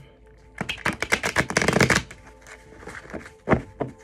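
A tarot deck riffle-shuffled by hand: a rapid flutter of card clicks for about a second and a half, followed by two single sharp taps of the cards near the end.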